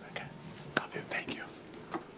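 Men talking in whispers, with a single sharp click about three-quarters of a second in.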